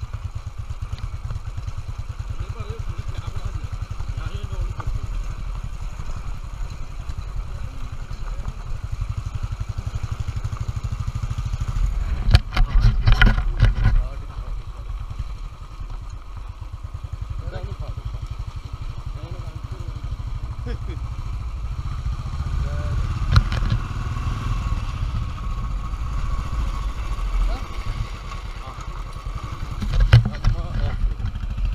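Royal Enfield Bullet Electra 350's single-cylinder four-stroke engine running steadily under a rider off-road, its low even pulse continuous. About twelve seconds in, a two-second burst of loud knocks and clatter comes from the bike over rough ground, with another sharp knock later.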